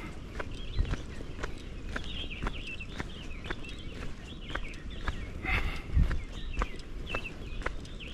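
Footsteps of a person walking at a steady pace on a paved road, each step a short click.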